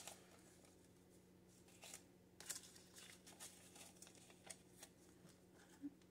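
Faint, scattered rustling and flicking of paper banknotes being counted and shuffled by hand.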